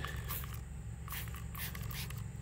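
Trigger spray bottle of Turtle Wax Ice Seal N Shine spray wax squirted onto a car's painted fender: about four short hissing sprays, over a steady low background hum.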